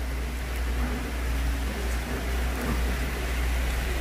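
Steady low hum with an even background hiss: room tone with no distinct event.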